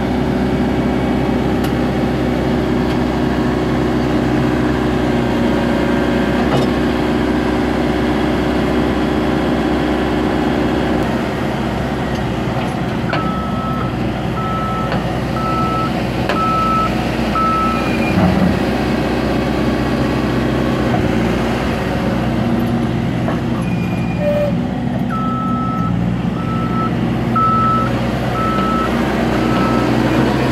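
Caterpillar 416D backhoe loader's diesel engine running steadily as the machine drives and manoeuvres, with its reverse alarm beeping about once a second in two runs of about five beeps each, a little under halfway through and again near the end.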